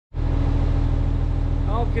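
A steady, low engine drone with a fast even pulse, a machine running at idle. A man's voice comes in near the end.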